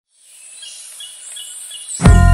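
Outdoor nature ambience fading in from silence: a steady high-pitched hum with short, evenly spaced chirps, about three a second, over a faint hiss.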